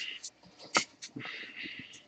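Light handling noise: a few small clicks and knocks, then a brief soft rustle.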